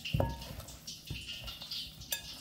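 Hands mixing raw chicken wings in a flour coating in a glass bowl: soft, irregular squishing and dusty rustling, with small knocks against the glass. The first knock is just after the start and rings briefly.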